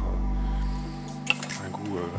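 Sugar cooking to a dark caramel in a stainless saucepan on a gas burner, bubbling just before it turns bitter, under steady background music. A single sharp click sounds just past halfway.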